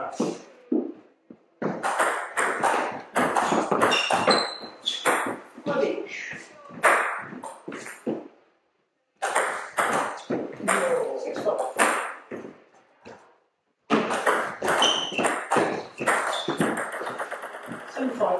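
Table tennis rallies: the ball clicking back and forth off the bats and the table in quick succession, in separate points broken twice by a brief silence.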